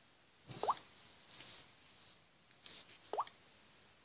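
Two short rising 'bloop' sound effects from a tablet app's buttons, one about half a second in and one about three seconds in, each with a small click, as the screen is tapped.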